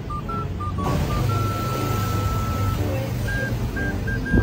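Background music: a simple tune of short, high electronic notes, with one long held note in the middle and a steady low hum underneath.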